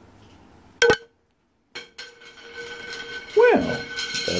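Metal shaving-soap tin being opened: a sharp metallic clink about a second in, then a steady squeal that bends near the end as the lid is worked off the tin.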